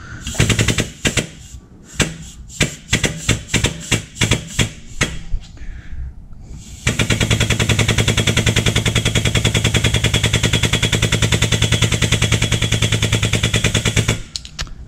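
Shop press's air-over-hydraulic pump pressing a bearing sleeve into an engine crankcase. For the first half it comes in short, irregular bursts, then from about halfway it runs in loud, rapid, even pulses as it builds pressure.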